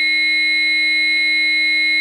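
AED training unit sounding a steady, loud electronic alert tone, its shock button lit: the device has charged and the shock is ready to be given.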